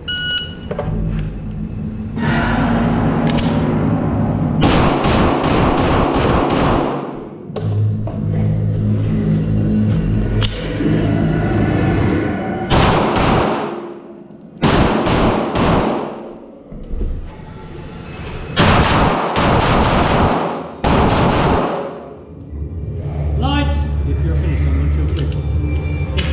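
Shot-timer start beep, then a semi-automatic pistol fired in quick strings of several shots with short pauses between, ringing in an enclosed indoor range bay.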